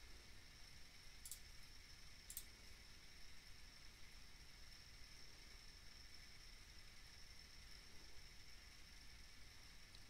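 Near silence: room tone with a faint steady high whine, broken by two faint computer-mouse clicks, the first a little over a second in and the second about a second later.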